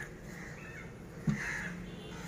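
A crow cawing, one call about one and a half seconds in, just after a short sharp knock, over steady outdoor background noise.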